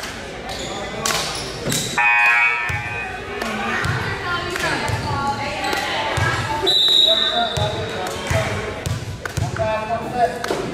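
Spectators' chatter echoing in a gymnasium, with a ball bounced on the hardwood floor several times in a loose rhythm. About two-thirds of the way through there is one short, high referee's whistle blast, the signal to serve.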